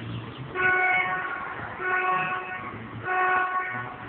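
A horn sounds three blasts at one steady pitch, each just under a second long and about a second apart, over a low background hum.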